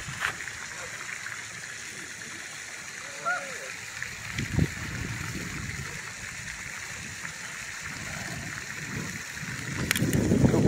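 A pond fountain spraying water, a steady splashing hiss. A brief faint call sounds about three seconds in, and a low thump a little later.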